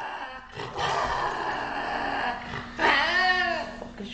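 An angry lynx growling: a harsh growl of about two seconds, then a louder, wavering yowl that rises and falls in pitch near the end.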